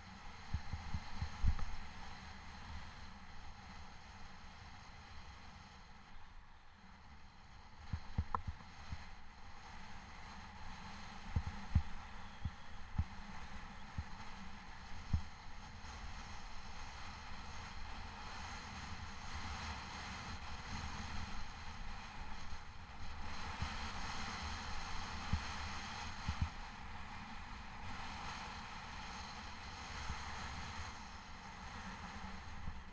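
Snowboard sliding down a groomed snow piste: a steady hiss of snow under the board, louder in the last third, with wind on the microphone. Scattered low thuds through it, the strongest about a second in.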